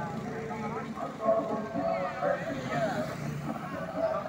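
Indistinct chatter of several voices at a roadside, with the low noise of road traffic underneath.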